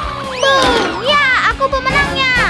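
A child's voice making excited wordless play cries whose pitch sweeps high and falls, over upbeat background music with a steady beat.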